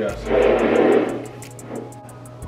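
Background music with a plucked guitar and an evenly spaced ticking beat. About a second long, a loud breathy, unpitched rush sits over it near the start and is the loudest sound.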